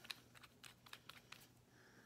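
Near silence with a scattering of faint small clicks and taps as a nail polish bottle and brush are handled.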